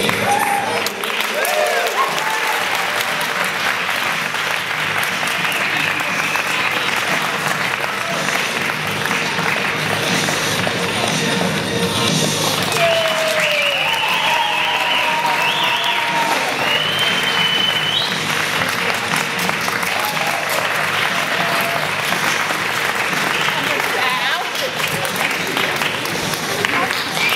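Audience applauding steadily, with cheers and whoops and music playing underneath.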